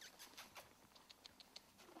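Near silence, with faint, scattered light clicks and rustles.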